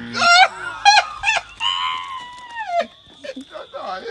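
A high-pitched voice gives a few quick loud shrieks, then one long cry that falls in pitch near the middle. A thin steady high tone begins under it near the end.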